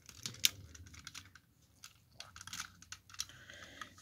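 Light plastic clicks and taps from a Masterpiece Grimlock action figure being handled as its clear plastic sword is fitted into its hand. One sharper click comes about half a second in.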